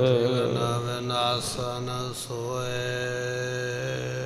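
A man chanting a verse in a slow melodic recitation style, drawing the words out into long, steady held notes with a short break about halfway, over a steady low drone.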